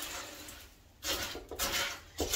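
Wooden spoon stirring corn flakes through a sticky peanut butter mixture in a nonstick frying pan, with two noisy stirring strokes in the second half.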